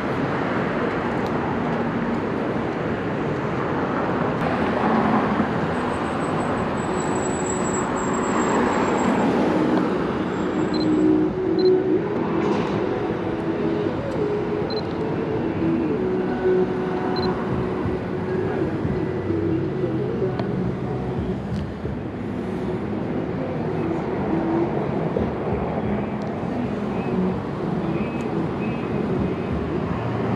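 City street traffic noise: cars passing on the road, with a vehicle engine's hum clearest through the middle stretch.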